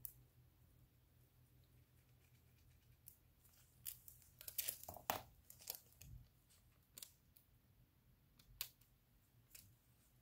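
Faint crinkling and crackling of thin nail foil being rubbed down onto a painted rock with gloved fingertips and then peeled away from its transfer sheet. It comes in scattered brief crackles from about three seconds in, with a soft low bump about six seconds in.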